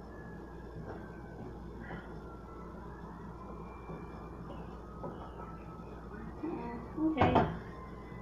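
Soft scraping of a utensil stirring the mushroom filling in a frying pan, faint over quiet kitchen room tone, with a sharp knock about seven seconds in.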